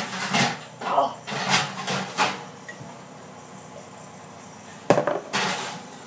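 A child gulping water from a glass, several quick swallowing and breathing noises, then a sharp knock about five seconds in.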